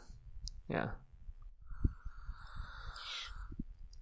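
A lull in a spoken conversation: one person says a short "yeah", then there are only faint scattered low knocks and clicks and a soft hiss lasting about a second, all much quieter than the talk around it.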